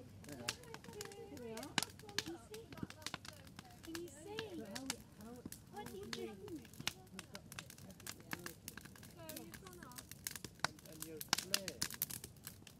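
Wood fire crackling in the open fireboxes of a brick-built wood-fired kiln, with many sharp, irregular pops throughout. People talk in the background.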